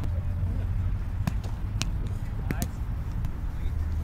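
A handful of sharp slaps from a roundnet rally, with hands striking the small rubber ball, coming in quick succession between about one and three seconds in. A steady low rumble runs underneath.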